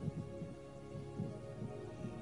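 Soft background music under the preaching: sustained, held chords with quiet low bass notes swelling every so often.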